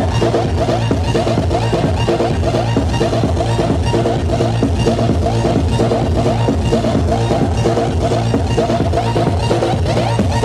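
Electro house music played loud over a club sound system, with a steady kick drum beat under dense synth lines.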